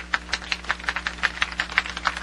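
Scattered applause from a small crowd: individual hand claps, sharp and irregular, about five or six a second.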